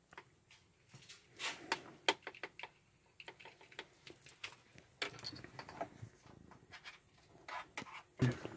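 Light, irregular clicks and taps of hands handling things at a computer desk and keyboard.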